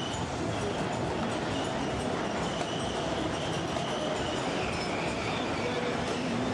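Mechanical horse-racing arcade game running: the model horses rattle steadily along their tracks as the race runs.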